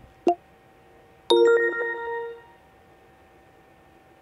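Uber driver app sounds through a phone's speaker: a short pop, then about a second in a bright chime of several tones that rings out over about a second, signalling that the driver has gone online.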